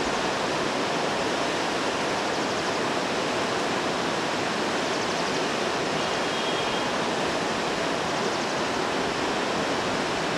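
Steady rushing outdoor noise, like running water, with a faint short high whistle about six seconds in.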